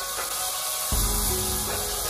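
Diced tomatoes sizzling in hot oil in a wok as they are stir-fried, a steady hiss, with background music playing under it.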